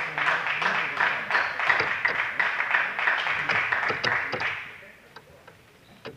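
Spectators clapping, a dense spread of many hand claps that dies away about four and a half seconds in.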